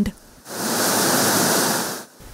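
Shelled maize kernels pouring through the grate into a grain-cleaning machine's hopper: a steady rushing hiss that starts about half a second in and cuts off near the end.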